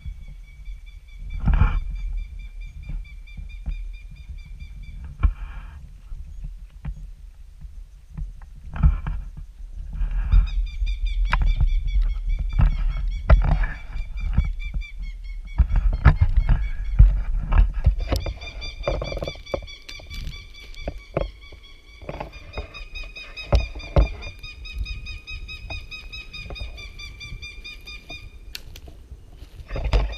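Low rumble of wind and handling on a handheld microphone, with knocks, under a steady high-pitched whine with overtones. The whine breaks off about five seconds in and returns about ten seconds in.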